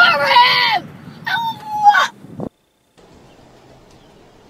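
A young woman's high-pitched shrieking laughter: two long, loud cries, the first sliding down in pitch and the second held level about a second later. It cuts off abruptly at about two and a half seconds, leaving only a faint hum.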